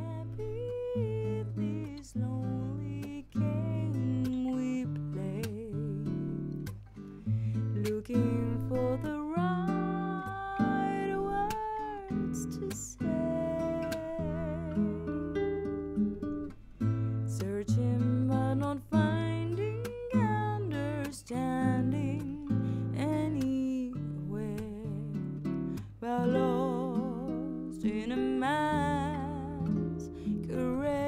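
Raw multitrack playback of a woman singing with vibrato over guitar, dry and unmixed, with no effects, EQ or sends applied.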